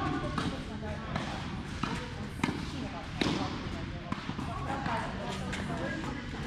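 Tennis balls being hit back and forth with rackets in a quick volley rally: a series of sharp pops, about one every three-quarters of a second, in a large indoor tennis hall.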